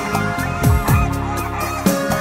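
Domestic geese honking several times, with short falling calls, over instrumental background music.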